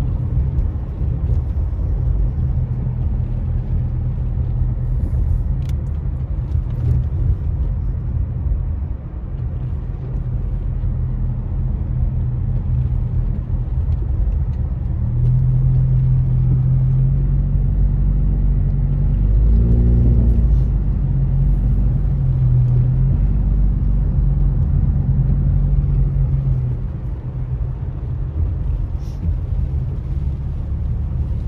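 Car engine and road noise heard from inside the cabin while driving on a wet road: a steady low hum whose engine note grows louder and rises in pitch about halfway through, wavering briefly near two-thirds of the way before settling back.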